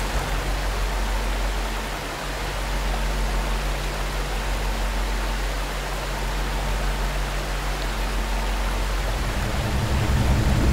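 Steady rush of a heavy column of pouring water, with a low steady machine hum underneath.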